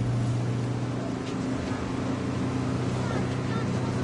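A steady, low engine hum running without change, with faint voices in the background.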